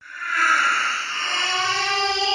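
Horror-film sound design: a loud hissing swell that starts suddenly out of silence, with steady tones joining it near the end.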